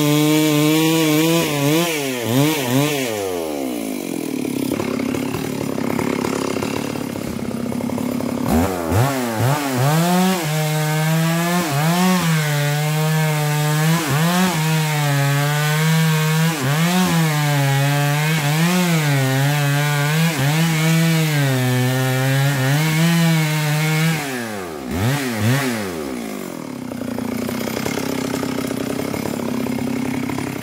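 Chainsaw dropping to idle about two seconds in, then revving up and running at high speed through a cut in a log for about fifteen seconds, its pitch dipping and recovering again and again under load. It falls back to idle near the end.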